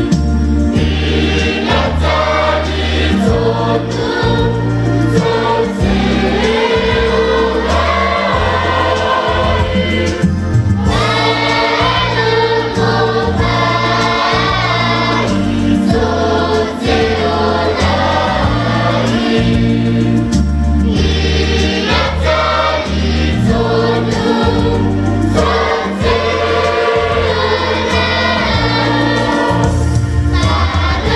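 A mixed church choir of men, women and children singing a Samoan hymn in parts, phrase after phrase with short breaths between, over steady low bass notes.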